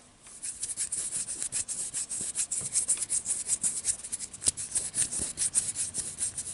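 Close-up hand and fingertip rubbing, a quick, uneven run of short scratchy strokes that begins after a brief hush at the start.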